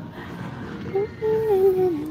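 A woman humming a short held note that slides downward, starting about halfway in, over steady background hum.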